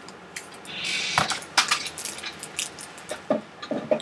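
Hands handling a plastic Xyron sticker maker and crinkly plastic packaging: a short rustle about a second in, a sharp knock, then a few light clicks and taps.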